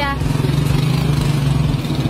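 Motorcycle engine of a passenger tricycle running at idle close by, a steady, rapid low putter.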